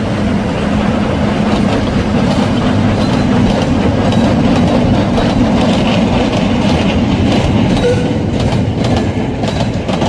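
Miniature narrow-gauge passenger train running past, a steady rumble and hum with its wheels clicking over the rail joints, the clicks clearer in the second half.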